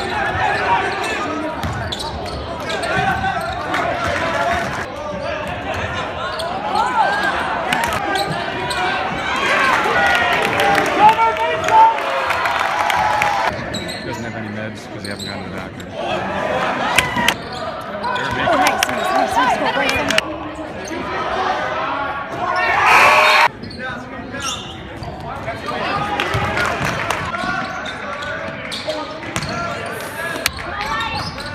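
Live basketball game sound in a gymnasium: a basketball dribbled on the hardwood court among running players, over the steady chatter and calls of spectators' voices.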